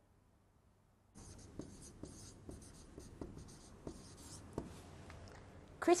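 Dry-erase marker writing on a whiteboard: a run of short scratchy strokes with a few taps, starting about a second in.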